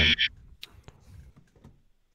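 A man's voice trailing off at the very start, then a few faint clicks in near quiet.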